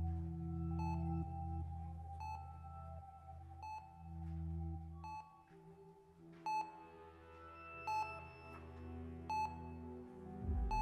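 Slow ambient music of held low notes, with a patient monitor beeping at an even pace, about once every one and a half seconds. The beeps stand out more in the second half.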